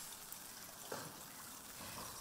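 Faint trickling of seawater among intertidal rocks, with a brief soft sound about a second in.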